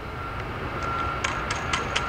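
A low mechanical rumble grows steadily louder. From about half a second in it carries a steady high tone, and from about a second in there are regular ticks, about four a second.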